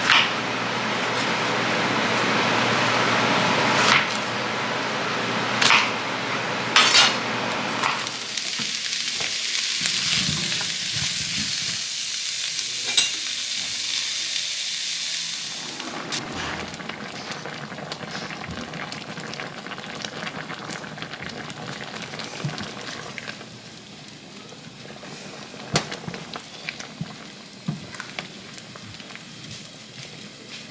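Onions and black beans sizzling in a hot frying pan, loudest in the first half and dying down gradually. A few sharp clicks and scrapes of a spatula stirring the pan come through over the second half.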